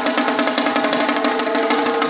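Sumo fure-daiko, a small rope-bound drum slung from a pole, beaten with two long thin sticks in a rapid, even roll of sharp strikes, the drumhead ringing under them.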